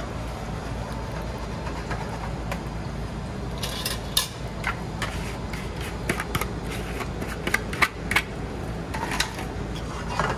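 Steady low hum of a commercial kitchen's ventilation, with scattered clicks and scrapes of a utensil on metal from about three and a half seconds in, as gumbo is scraped out of a take-out tin into a stainless steel pan.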